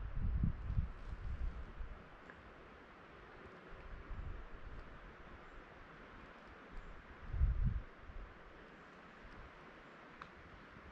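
Wind rumbling on the microphone for the first two seconds and again briefly past the middle, over faint outdoor ambience.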